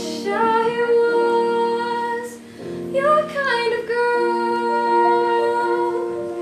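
A young woman singing a solo with piano accompaniment, holding long notes that slide between pitches, with a short break about two and a half seconds in.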